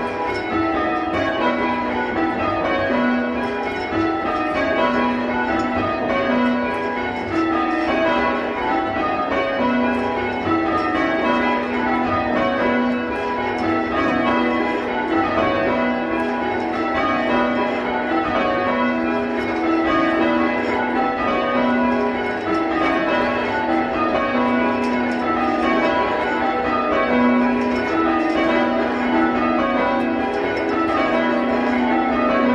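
A ring of six church bells cast and hung by Whitechapel, tenor about 6 cwt in the key of B, change ringing: the bells strike one after another in a steady, continuous stream of changes, with the tenor's low note coming round again and again.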